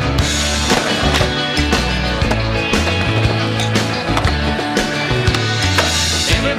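Skateboard on concrete, with wheels rolling and the board clacking, under a rock song soundtrack that runs throughout.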